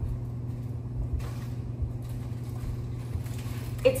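A steady low hum, with a few soft bumps and rustles of something being handled close to the microphone.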